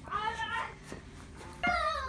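A single drawn-out, meow-like cry that wavers in pitch for about a second and a half, followed by the start of another cry near the end.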